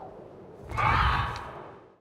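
An animated-film whoosh as the flying pterosaur sweeps past, starting suddenly about a third of the way in with a low rumble under it, then fading away.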